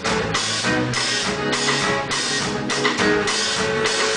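Live band playing: strummed acoustic guitar over a drum kit, with cymbal and drum strokes falling several times a second.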